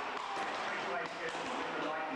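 Several axes chopping 15-inch logs in an underhand chop, with many irregular, overlapping strikes of blades biting into wood. The voices of a crowd sound underneath.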